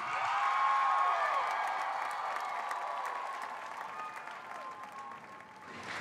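Studio audience applauding and cheering. The applause is loudest about a second in, then dies away gradually over the next few seconds.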